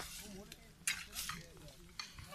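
Dry reeds and brush crackling and rustling in a few short, sharp bursts.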